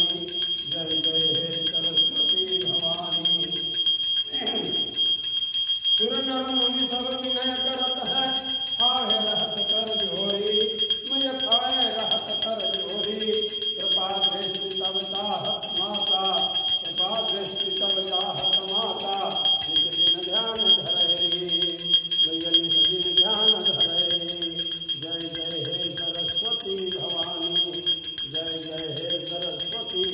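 A small brass puja bell rung without pause during an aarti, with voices singing the aarti song over it.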